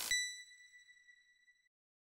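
A single bright electronic ding sound effect that rings and fades away over about a second and a half, just as a short burst of static-like glitch noise cuts off at the start.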